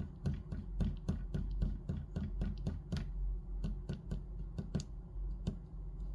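Kneaded eraser tapped again and again onto charcoal-covered sketchbook paper, lifting charcoal off the drawing. Quick light taps, several a second, stopping about five and a half seconds in.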